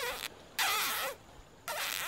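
Squeaky, breathy cartoon smooching noises, repeated about once a second as the characters pucker up to kiss.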